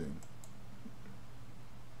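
Two quick, faint computer mouse clicks in the first half second, over a steady low hum.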